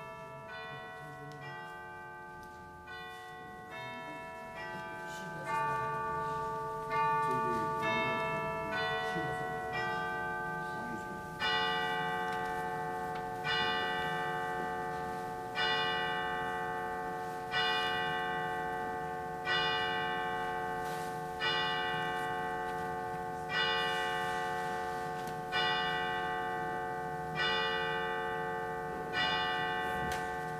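Church chimes ringing the hour: a chime tune of quicker notes that grows louder, then slow single hour strokes about two seconds apart, each ringing on as it fades.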